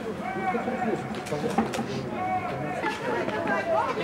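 Voices calling and shouting across a football pitch during play, with one sharp knock about one and a half seconds in.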